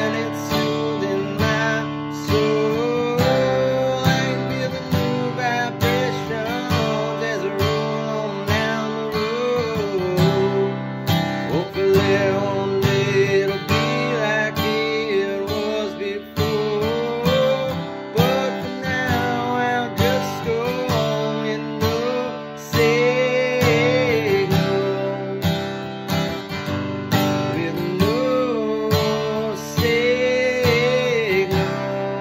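Steel-string dreadnought acoustic guitar strummed steadily, with a wordless vocal melody wavering over it.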